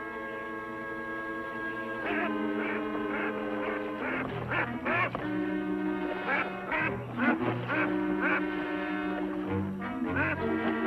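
Orchestral background music with held chords. About two seconds in, a flock of ducks starts quacking, short calls repeated several times a second over the music.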